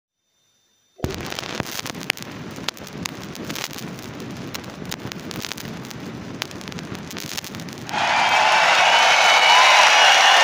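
Stylus crackle and pops with surface noise from a vinyl LP's lead-in groove, starting about a second in. Near the end the live album's crowd applause and cheering comes in louder.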